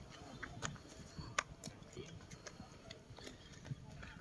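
Footsteps on stone steps as people climb: irregular light taps and scuffs of shoes on stone, with faint voices in the background.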